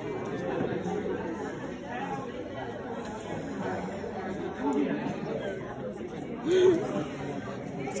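Chatter of many people talking at once in a large hall, with one nearby voice briefly louder about six and a half seconds in.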